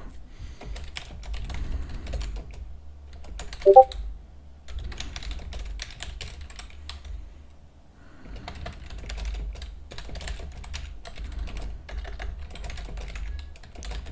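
Typing on a computer keyboard: runs of keystroke clicks, pausing briefly around four seconds in and again around eight seconds in. A single short, loud pitched blip comes about four seconds in.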